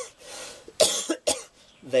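A man coughing: two short coughs about half a second apart.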